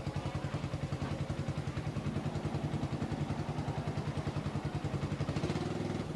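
A steady, low mechanical drone that pulses rapidly, about ten beats a second, easing into a smoother hum near the end.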